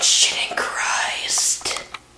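A young person whispering close to the microphone, breathy and unvoiced, in short syllable-like runs.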